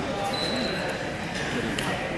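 Indistinct chatter of many voices in a gymnasium, with a faint high tone in the first second and a few light knocks.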